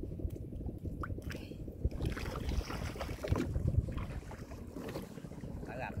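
Gill net hauled by hand out of the water over a boat's side, with water splashing and dripping and small clicks of handling, over low wind rumble on the microphone.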